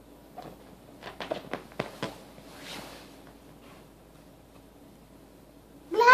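A run of soft clicks and rustles from movement on a sofa, then right at the end a toddler's short, loud pitched cry, the loudest sound here.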